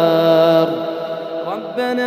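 Male Quran reciter's voice holding a long melodic note at the end of a verse. The note fades away about two-thirds of a second in, and the next phrase begins near the end.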